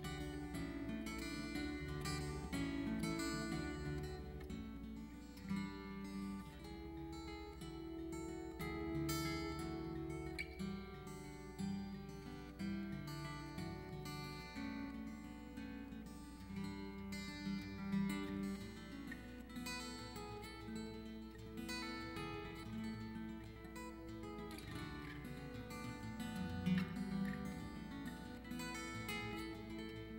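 Solo fingerstyle acoustic guitar playing a slow instrumental piece, with a steady flow of plucked bass and melody notes in a lowered tuning.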